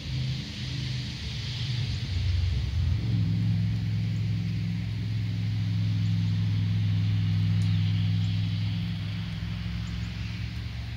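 A steady low mechanical hum, like a motor running, growing stronger about three seconds in and then holding even, over a faint hiss.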